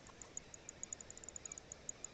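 Crickets chirping: short, high ticks repeating several times a second over a faint hiss.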